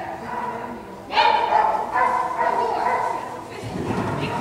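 A dog barking repeatedly during an agility run, high-pitched barks starting about a second in and coming roughly twice a second.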